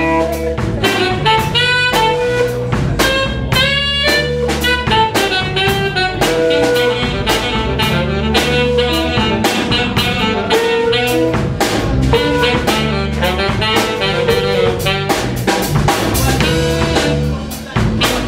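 Live blues band playing an instrumental passage: a saxophone plays lead lines over electric guitar, bass and drum kit keeping a steady beat.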